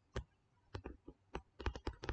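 Faint, irregular sharp clicks and taps, about ten of them and bunched toward the end, made while writing by hand on a computer screen stroke by stroke.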